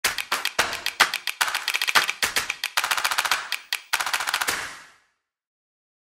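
A rapid, irregular run of sharp clicking hits, several a second, that fades out about five seconds in.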